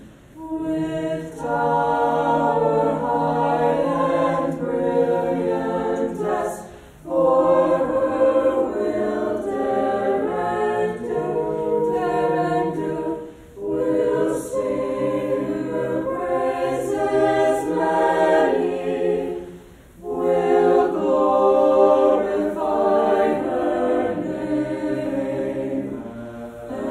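Mixed-voice choir singing the university alma mater a cappella, held chords in long phrases with brief breaks for breath about every six to seven seconds.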